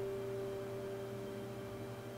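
Background music: a single soft note held steady under a pause in the dialogue.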